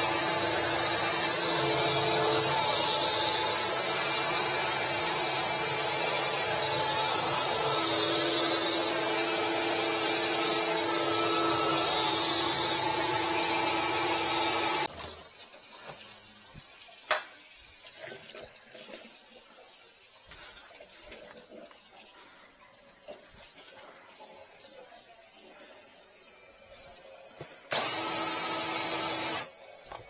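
Electric drain-cleaning machine running with a steady motor whine while clearing a sink drain line packed with debris. It cuts off suddenly about halfway, leaving only small handling clicks, then runs again briefly near the end.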